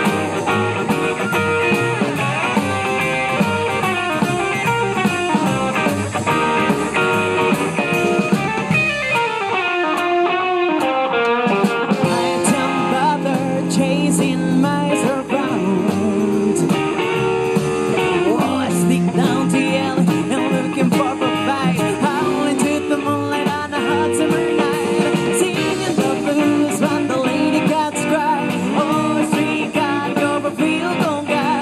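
Live band of electric guitar, upright double bass and drum kit playing a blues-tinged tune, the electric guitar prominent, with a falling run of notes about nine seconds in.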